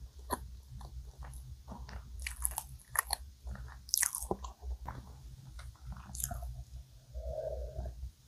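Close-up chewing of a soft cream-filled donut, with many small wet mouth clicks. Near the end come a few gulps of milk swallowed from a glass.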